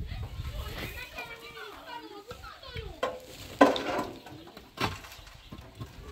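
Hollow concrete blocks knocking and scraping as they are handed up and set on top of a block wall, a few sharp knocks, the loudest about three and a half seconds in. Indistinct voices in the background.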